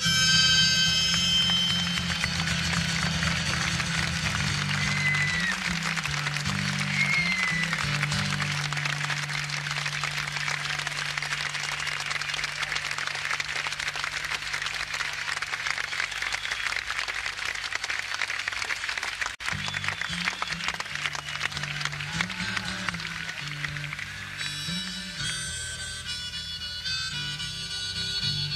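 Live concert audience applauding and cheering at the end of a song, with a couple of short whistles, over the band's low held notes. Near the end the band starts playing again.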